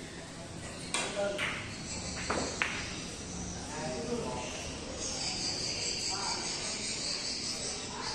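Carom billiard shot: the cue tip strikes the cue ball about a second in, then several sharp ivory-like clicks of ball hitting ball over the next second and a half. A steady high buzz runs underneath.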